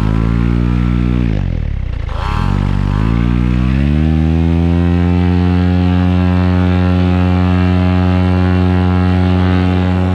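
Paramotor engine and propeller: the pitch drops as the throttle is eased during the first two seconds, then rises to full power about two to four seconds in and holds steady for the takeoff run and climb-out.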